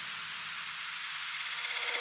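A white-noise wash in an electronic dance track's breakdown, with the beat and bass gone. Near the end it swells with a fast, quickening pulse, building back toward the drop.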